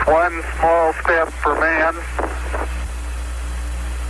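Archival Apollo 11 radio transmission from the Moon: Neil Armstrong's voice over hiss and a steady low hum, speaking for about two and a half seconds, then only the hiss and hum of the open channel.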